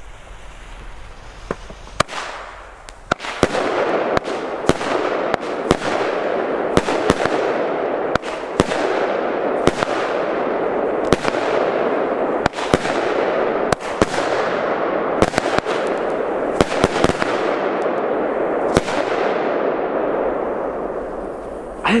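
Blackboxx 'Vogelschreck' salute battery firing: after about two seconds a quick series of sharp bangs, roughly one or two a second, over a continuous hiss. It runs for about seventeen seconds and then dies away.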